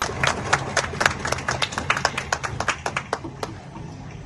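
Hands clapping in quick, separate claps that thin out and stop about three and a half seconds in, as applause at the close of an oath, over a low murmur in a large hall.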